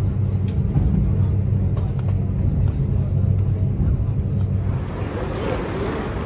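Steady low rumble of a moving vehicle heard from inside, running smoothly at speed. Near the end it gives way to a busier, hissier ambience.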